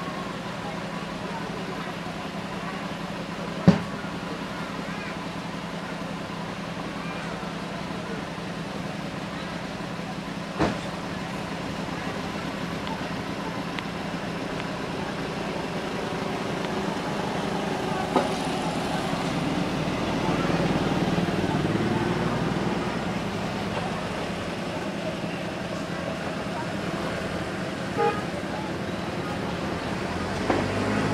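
Steady low hum of a running motor with indistinct background voices that grow louder past the middle, and four sharp clicks spread through.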